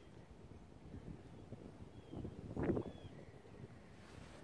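Faint outdoor ambience: a low wind rumble on the microphone, with two faint, short high chirps in the middle.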